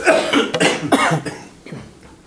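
A person coughing, two or three coughs in about the first second, then quieter.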